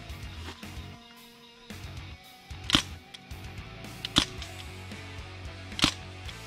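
Airsoft rifle fired three times on semi-automatic: single sharp shots about a second and a half apart, over background music.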